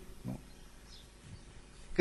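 A pause in a man's talk: a brief, faint voiced sound from him just after the start, then quiet room tone.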